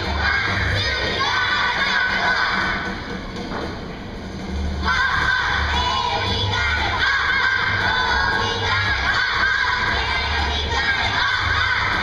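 Children's choir singing loudly together over a recorded accompaniment with a steady bass beat played through loudspeakers. The voices ease off briefly about three seconds in and come back in full just before five seconds.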